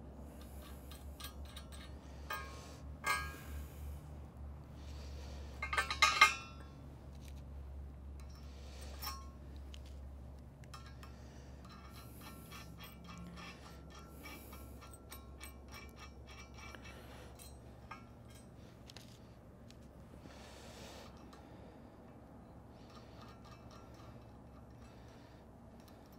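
Small metal clinks and clicks of steel nuts and bolts being hand-threaded on a steel cracker plate, with a few louder clinks about three and six seconds in.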